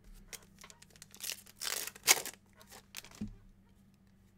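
A trading-card pack wrapper being torn open and crinkled by hand, in a few quick rips and crackles, the sharpest about two seconds in.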